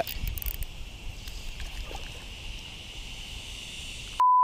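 Faint outdoor ambience: a steady, high insect drone runs throughout. A few sharp clicks and a low rumble of handling come in the first second.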